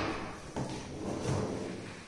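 A kitchen cabinet drawer holding a stainless-steel wire plate basket slides open on its metal side runners, the noise fading over about two seconds.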